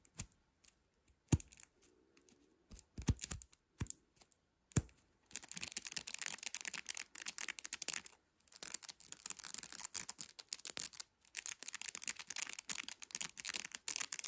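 Nylon mesh fidget tube with a marble inside being squeezed and rubbed between the fingers: a few sharp clicks in the first five seconds, then dense, rapid, scratchy crackling of the mesh in three stretches broken by short pauses.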